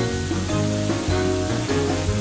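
Background music with a steady bass line, over an even hiss from a small electric popcorn machine that has just been switched on.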